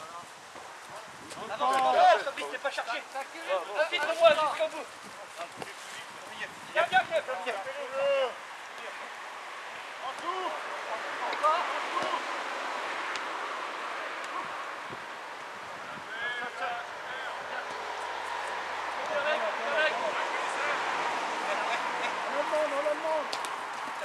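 Shouts and calls of players on an outdoor football pitch, loudest in the first eight seconds and scattered after that, over a steady outdoor noise that swells in the second half.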